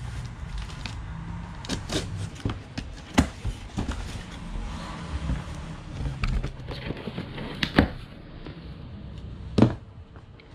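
Scissors cutting the packing tape on a cardboard box while the cardboard is handled: irregular rustling and scraping, with scattered sharp clicks and knocks, the loudest near the end.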